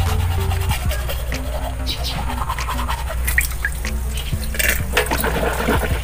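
Toothbrush scrubbing teeth, a scratchy brushing sound, over background music with a simple hopping melody.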